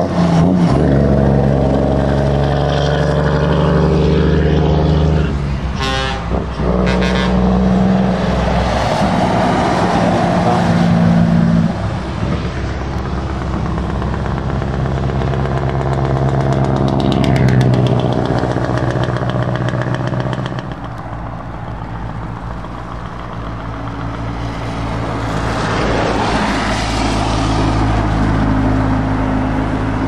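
Heavy lorries driving past one after another on a wet road, among them an ERF and a Scania: a low diesel engine drone with tyres hissing on the wet tarmac, rising and falling with each pass.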